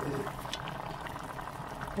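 Pot of pork with onion and spring onion simmering in the liquid drawn from the onion, with no water added: a steady soft bubbling with small pops throughout.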